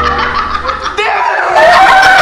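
Background music that breaks off about a second in, then a loud burst of laughter, held on one pitch.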